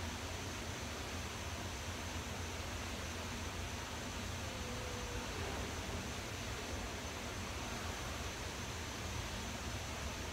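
Steady, featureless background hiss with no distinct sounds in it.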